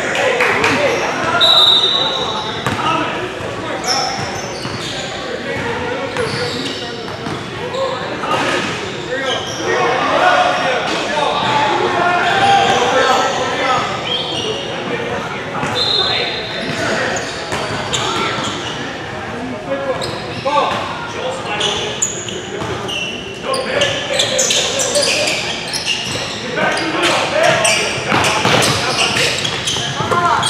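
Basketball game sounds in a gym: the ball bouncing on a hardwood court, brief high sneaker squeaks and players' voices, all echoing in the large hall.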